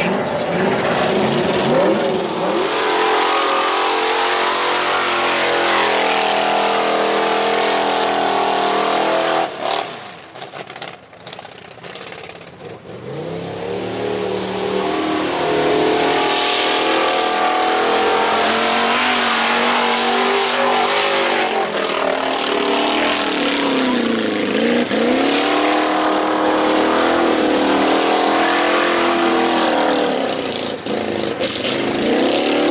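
Engine of an off-road race buggy revving hard on a dirt track. Its pitch climbs through repeated upshifts and drops as it slows. The sound fades for a few seconds about ten seconds in, then builds again.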